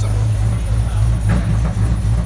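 Supercharged 6.2-litre LSA V8 idling with a steady low rumble.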